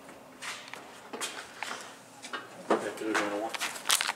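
Indistinct speech, low and short, with a few light clicks and knocks.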